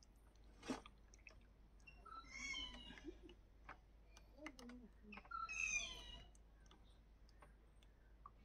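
Two high, wavering animal calls, each about a second long, the second louder, over scattered faint clicks.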